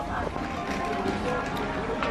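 Background murmur of distant voices with faint music underneath; no clear handling sound stands out.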